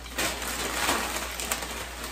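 Brown paper bag rustling and crinkling as a bundle of bookmarks with twine tassels is pushed down into it.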